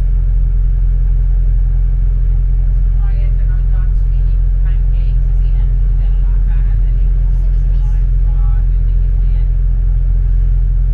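Steady low rumble of a double-decker bus running, heard from inside on the upper deck. Faint chatter of passengers comes in over it from about three seconds in.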